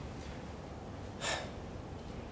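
A man's single short, sharp in-breath a little over a second in, over low steady room hum.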